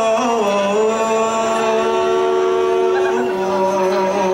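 Javanese dance accompaniment music carried by a single voice holding long chanted notes, dropping a step in pitch just after the start and again about three seconds in.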